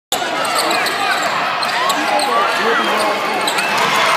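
Sneakers squeaking on a hardwood basketball court and a basketball being dribbled, over the steady chatter of a crowd in a gym.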